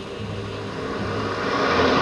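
A rushing noise that swells steadily louder and peaks near the end.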